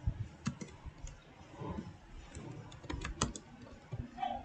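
Computer keyboard being typed on: a string of irregular, fairly quiet key clicks as a short line of text is entered.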